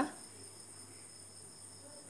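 Faint, steady high-pitched drone sounding at several pitches at once, over a low hum.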